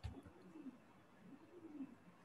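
Near silence with a bird cooing faintly, two low calls that rise and fall in pitch.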